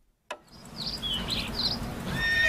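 Outdoor ambience fading in after a brief silence: a few birds chirping over a low steady background noise.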